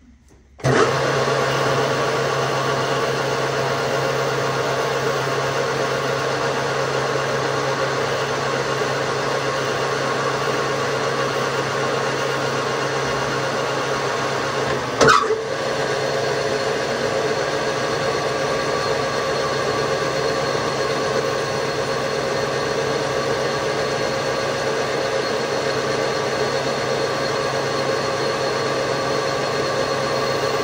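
Metal lathe running steadily, its motor and gearing giving a constant hum with several steady tones; it starts abruptly about half a second in. A single sharp knock comes about halfway through.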